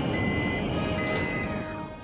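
A high, steady electronic beep sounding twice, each about half a second, over a background music bed, with a falling glide near the end.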